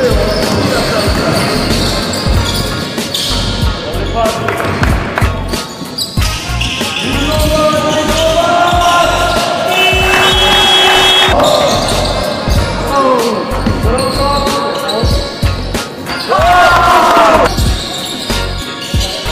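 Game sounds on an indoor hardwood basketball court: a basketball bouncing on the wooden floor in repeated sharp knocks, with players' voices calling out.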